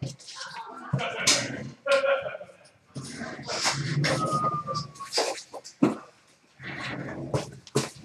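Handling noises of cardboard card packs and a shipping box being gathered on a counter: scattered knocks and rustles, with a brief squeak in the middle.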